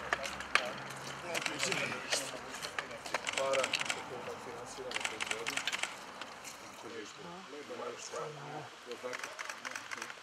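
Indistinct voices of several people talking as they walk, with scattered short clicks and knocks.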